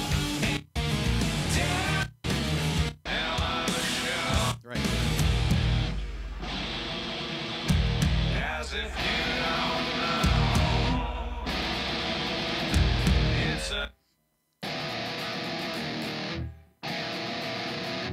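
Heavy rock with distorted electric guitar, the song's breakdown. It starts and stops in several short snatches over the first few seconds, then runs unbroken for about nine seconds, cuts out briefly and picks up again.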